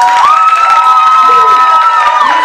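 Audience cheering and clapping, with several long, high held shouts overlapping one another.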